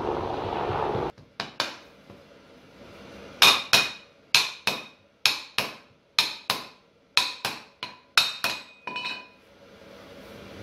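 Club hammer striking a steel bar laid across a sand-filled casting flask: ringing metallic blows, mostly in quick pairs about once a second, tapping the mould down to pack the sand hard. A second of dull noise comes before the first blow.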